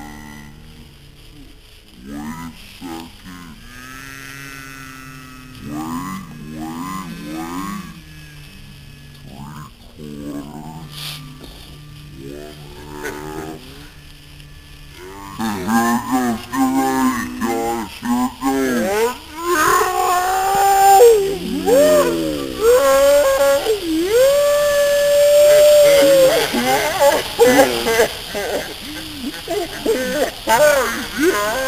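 Several people's voices making drawn-out, wordless vocal sounds that slide up and down in pitch, getting louder about halfway through, with one long held note near the end. Underneath, a steady hiss from a bundle of sparklers burning grows stronger in the second half.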